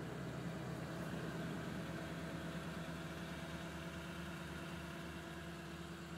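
A 2010 Toyota Tundra's engine idling steadily, heard from inside the cab as an even low hum.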